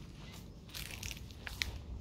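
Footsteps crunching on dry leaves and grit on a paved path, with a few sharp clicks near the end.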